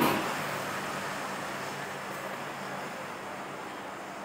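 Quiet outdoor street ambience: an even hiss with a faint steady low hum of distant traffic, easing slightly in level.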